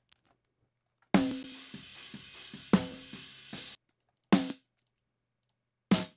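Recorded metal drum-kit track played back from a mix session. A ringing snare hit about a second in, under a cymbal wash and a few quick kick beats, with a second snare hit, stops suddenly before the four-second mark. Two single snare hits follow.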